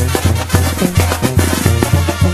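Mexican banda music in an instrumental passage between sung verses: low bass notes on every beat, about three a second, with drums and brass.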